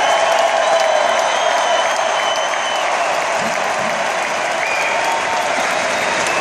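Large stadium crowd applauding and cheering, steady in level.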